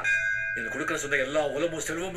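Film trailer soundtrack: a short bell-like ringing tone at the start, then a voice over background music.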